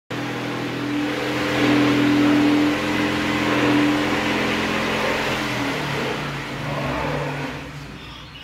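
A loud, steady machine-like drone with a low hum, which shifts in pitch about six seconds in and fades near the end.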